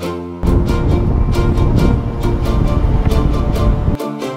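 Background music with a steady beat. About half a second in, the loud rumble of road and engine noise inside a moving van's cabin cuts in over it and cuts off abruptly just before the end.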